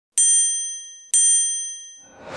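Two bright, high chime dings about a second apart, each ringing and fading away: the sound effect of an animated logo intro.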